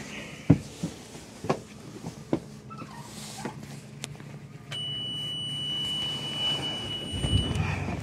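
A sailboat's inboard engine being started: a steady high beep from the engine panel's alarm buzzer for about three seconds, then the starter cranking and the engine catching near the end as the buzzer cuts out. A few short knocks come before it. This start is the test of whether raw cooling water flows again after a clogged strainer was cleared.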